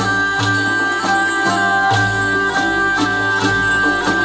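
Live folk ensemble playing medieval-style traditional music: a hurdy-gurdy, an oud and a guitar-like plucked string instrument over a steady high drone, with low notes on a regular beat.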